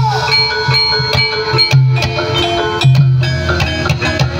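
Javanese gamelan music accompanying a kuda lumping horse dance: struck metallophone notes ringing over a steady, recurring drum beat.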